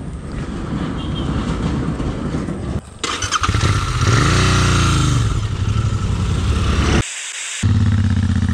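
Royal Enfield 650 parallel-twin motorcycle engines running, one revved up and back down about four seconds in, then a steady engine note as a bike rides off. The sound breaks off abruptly twice.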